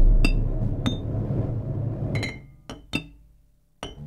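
Drumsticks striking small cymbals laid on a snare drum head: about half a dozen sharp metallic hits, each ringing briefly, in free improvisation. Under them a low drone fades out about two and a half seconds in.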